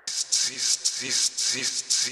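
Techno track in which a rapid, rhythmic hiss of shaker-like electronic percussion with short pitched blips cuts in suddenly out of a near-quiet breakdown, with no kick drum yet.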